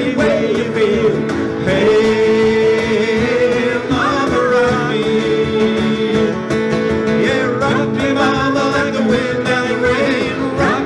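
A live acoustic folk-rock band playing: strummed acoustic guitars and a cajon beat, with singing over them.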